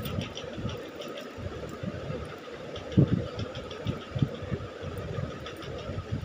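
Handling noise from a beaded metal choker necklace being moved about on a cloth: irregular low rustling and rumbling with faint light clicks, over a steady faint hum, and one thump about three seconds in.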